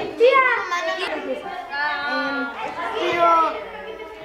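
Children's voices talking and calling out over one another, one shouting "¡Tía!" at the start.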